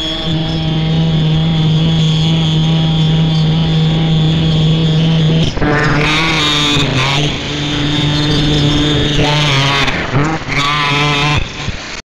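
A loud, steady pitched drone with overtones, held for about five seconds, then breaking and settling onto a second held note, with a brief pitch glide near the end.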